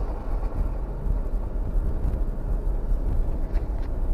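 Off-road Jeep driving slowly along a wet dirt trail: its engine running with a steady low rumble under an even wash of drivetrain and tyre noise.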